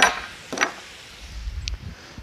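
Two sharp metallic clinks about half a second apart, the first the louder, with a brief high ring after each, over a low rumble.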